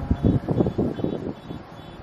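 Brief irregular rustling and handling noise, as of clothing and hands moving near the microphone, settling to a quiet hush after about a second.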